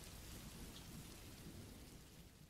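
Faint, steady rain from a rain sound-effect bed, slowly fading out toward the end.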